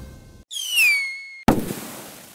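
Outro music ends, then a sound effect plays: a loud whistle falling in pitch for about a second, cut off by a sudden bang that fades away in a hiss.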